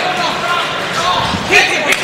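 Men shouting at ringside, with a single sharp thud near the end.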